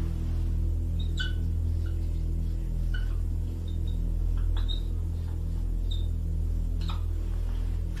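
A steady low hum runs through the whole pause. A few faint, short high chirps are scattered through it, and there is a soft click about seven seconds in.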